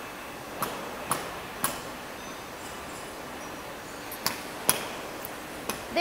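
Sharp metal knocks and pings in a factory workshop, about six spaced irregularly, each with a short ring, over a steady background hiss.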